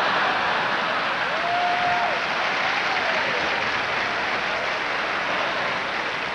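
Large audience applauding steadily after a comedian's punchline, with a brief held tone from the crowd about a second and a half in.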